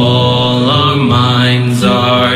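A rap song playing: long, held, chant-like sung vocal notes that glide between pitches over the backing track, part of the song's chorus.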